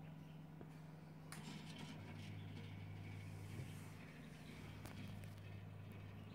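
Faint steady electrical hum from a homemade microwave-oven egg incubator's small fan and the microwave turntable motor that tilts the egg tray, with a second, lower hum joining about two seconds in.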